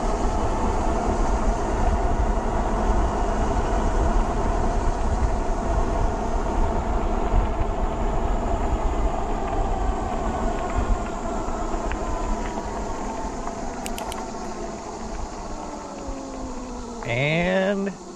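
Electric fat-tire e-bike climbing a hill under full throttle: the hub motor whines over wind rumble on the microphone and tyre noise. The whine slowly drops in pitch over the last several seconds as the motor dies down and the bike loses speed on the climb.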